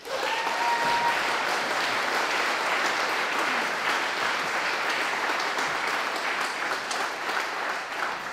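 Audience applauding, a steady clatter of many hands clapping that eases off slightly near the end.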